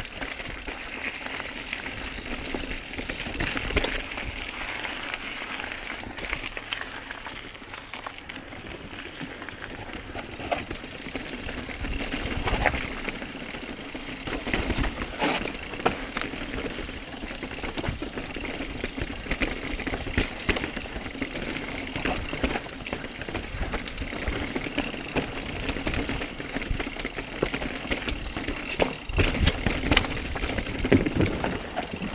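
Mountain bike descending a rough dirt trail: tyres running over dirt and rock, with frequent rattles and knocks from the bike and wind rumbling on the microphone.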